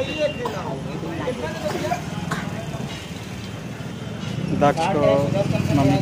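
People talking, with a voice loudest near the end, over a steady low hum of a vehicle engine running nearby.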